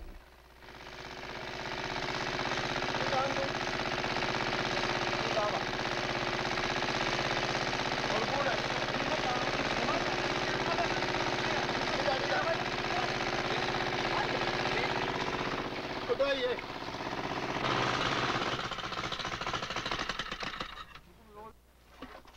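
Small gasoline-engine water pump running steadily at a well, with people's voices faintly over it. The engine sound dips briefly near the end, comes back, then fades out.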